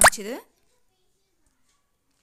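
Speech only: a short spoken word at the very start, with a sharp pop in it, then silence.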